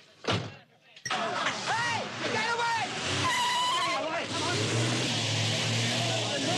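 A car door slams, and about a second later the Valiant Charger's engine starts up loudly and it pulls away, with high squealing tones and a steady engine note from about four seconds in.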